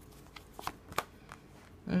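Tarot cards being handled and a card drawn from the deck and laid on a cloth-covered table, heard as a few faint, soft clicks and slides.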